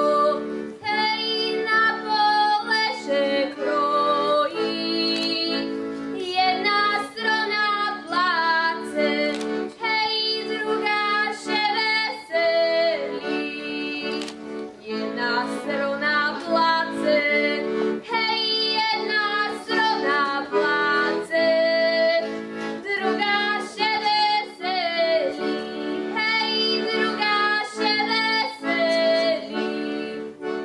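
A young girl singing a Slovak folk song solo, accompanied throughout by an accordion holding chords beneath her melody.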